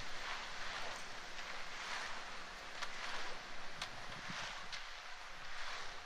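Faint outdoor job-site ambience: a steady wind-like hiss with a few light knocks.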